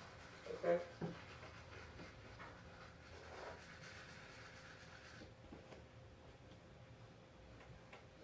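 Faint scrubbing of a toothbrush on teeth, stopping about five seconds in.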